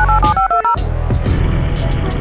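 Phone keypad dialling tones: a quick run of short two-note beeps in the first second as a number is tapped in. Background music with a heavy bass beat plays throughout.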